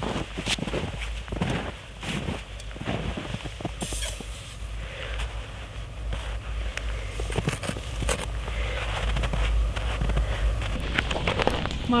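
Snow crunching in irregular steps and scrapes as a person walks out to gather snow for melting into water.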